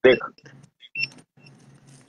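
A few short, faint high-pitched electronic beeps about a second in, heard after a brief spoken word.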